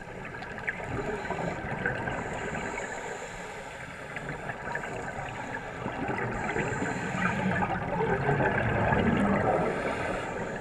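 Underwater ambience of a scuba dive: divers' regulator exhaust bubbles and a steady crackling hiss of water, heard muffled underwater, growing louder toward the end.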